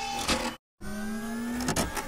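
Sound effect of a 3D printer's stepper motors whirring. It cuts abruptly to silence about half a second in, then returns as a steady whine that rises slightly in pitch.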